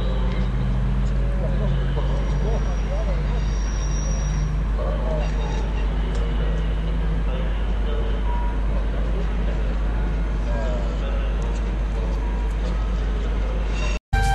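A diesel-hauled train pulling away: the steady drone of a Class 66 diesel locomotive's two-stroke V12 engine under a constant deep rumble, with faint voices.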